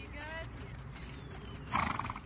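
A horse gives one short, loud call near the end, over a faint voice and birds chirping.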